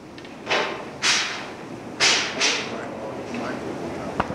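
Carousel slide projector clacking as slides are changed: four sharp clacks, the last two close together.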